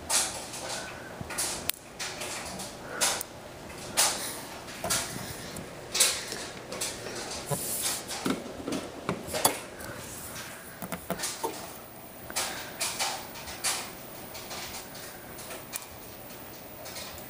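Irregular sharp snapping clicks of static sparks jumping from the high-voltage charged face of a CRT television to a metal rod and fork, with the loudest snaps at the start and about four, six and nine seconds in.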